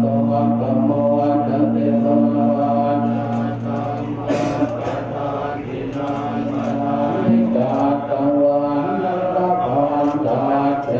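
Thai Buddhist monks chanting together in a low, droning monotone, with the held low note shifting about seven seconds in.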